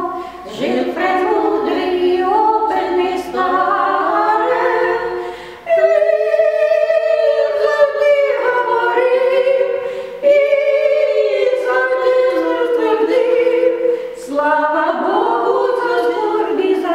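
Two elderly women singing a Ukrainian song together, unaccompanied. The voices carry long held phrases, broken by short breaths about half a second, six, ten and fourteen seconds in.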